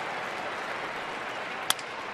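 Steady ballpark crowd noise, then near the end a single sharp crack of a wooden bat hitting the pitched ball, sending it on the ground.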